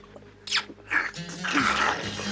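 Two men slurping and licking food straight from a wooden bowl and a cast-iron pan, in short noisy bursts that grow louder and denser near the end, with music underneath.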